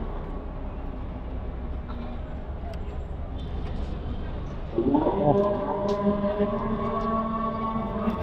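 Low traffic rumble, then about five seconds in a muezzin's call to prayer starts from a mosque loudspeaker: a single voice slides up into one long held chanted note.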